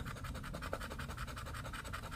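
The edge of a poker chip scraping the latex coating off a scratch-off lottery ticket: a steady run of many quick, short scratching strokes.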